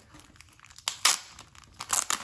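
A clear plastic cello sleeve crinkling as hands open it, with sharp crackles about a second in and again near the end.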